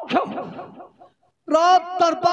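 A short, falling, voice-like cry dies away within the first second. After a moment of silence, stage music starts about one and a half seconds in: a held, steady chord with regular drum strokes.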